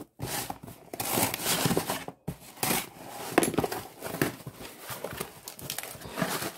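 Cardboard shipping box being opened by hand: the flaps are pulled apart and plastic wrapping crinkles as the contents are handled, in irregular rustles and scrapes.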